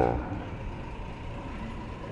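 Steady background noise of a large store's sales floor, with a faint steady high tone running under it. A man's long hummed "hmm" ends right at the start.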